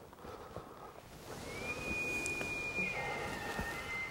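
Bull elk bugling: a high whistle that glides up about a second in, holds for over a second, then drops a little lower and holds.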